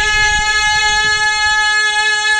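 A man's voice holding one long, steady high note of a sung devotional recitation, amplified through a handheld microphone.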